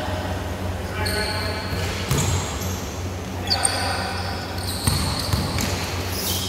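Sound of an indoor basketball game in a large echoing gym hall: players' voices calling out and a basketball bouncing on the hardwood court a couple of times.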